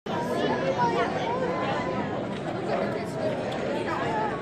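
Crowd chatter: many voices talking at once, overlapping, at a steady level.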